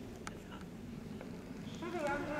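Low outdoor rumble with a few faint clicks, then a long, drawn-out shout from a spectator begins near the end.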